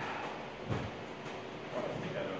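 A single soft, low thud on a padded boxing-ring mat a little under a second in, as a sparring partner steps across it, over quiet room noise.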